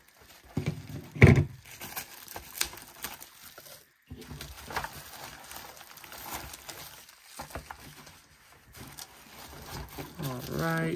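Bubble wrap and plastic packaging crinkling and crackling as it is cut and pulled apart by hand, with scattered small clicks. There is one louder thump about a second in.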